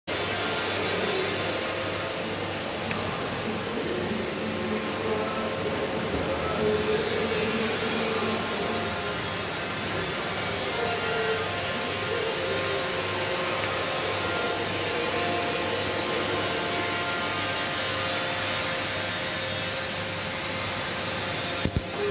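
TIG (process 141) welding arc running steadily as tube ends are welded into a tube sheet: a continuous hiss with a slow, even pulse in its low hum. A few sharp clicks come near the end.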